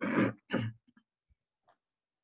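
A man coughing twice in quick succession, a short rough burst and then a smaller one, heard through a video-call microphone.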